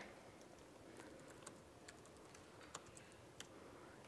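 Faint typing on a laptop keyboard: a string of soft, irregularly spaced key clicks.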